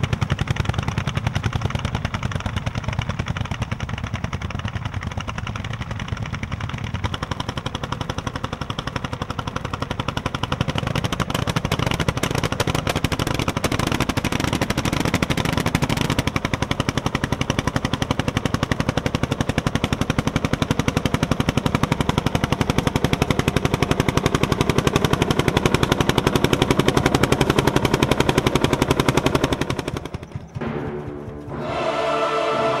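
Landini 'Testa Calda' tractor's single-cylinder hot-bulb two-stroke engine running, its exhaust beating in a rapid, even stream of sharp pulses: the 'tam-tam' these tractors are known for. It grows louder toward the end.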